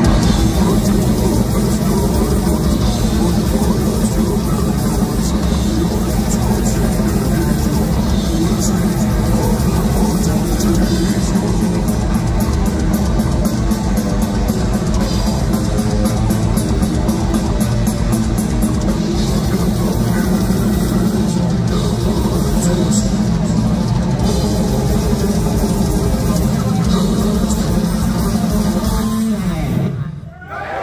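Death metal band playing live at full volume: heavily distorted guitars and bass over very fast drumming, with stretches of rapid blast-beat strokes. The song stops abruptly near the end.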